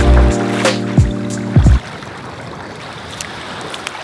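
Background music with sustained chords and deep bass hits, cutting off a little under two seconds in. Then a steady wash of small waves breaking at the shoreline.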